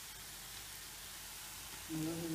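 Chopped onions frying in oil in a pan, a faint steady sizzle.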